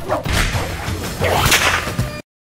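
Whip sound effects from an anime fight: a sharp crack at the start, then two whipping swooshes, the louder one about a second and a half in.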